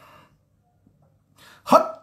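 A short pause, then a man's voice breaks in loudly near the end.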